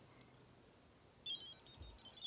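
Digimon X virtual pet beeping a high electronic jingle from its small speaker, starting a little over a second in after a near-silent pause, as its screen brings up a Digimon sprite.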